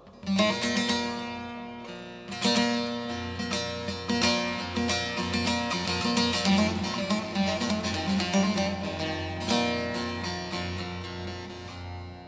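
Bağlama (Turkish long-necked saz) playing an instrumental introduction to an aşık folk song: quick plucked melody notes over steady, ringing low tones. It begins about half a second in.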